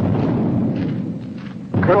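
A low, noisy rumble of battle sound from a war film's soundtrack, fading away over about a second and a half. A man's voice cuts in near the end.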